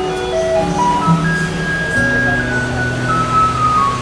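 Steel-string acoustic guitar played fingerstyle: a slow melody of single plucked notes over low bass notes that ring on steadily from about halfway through.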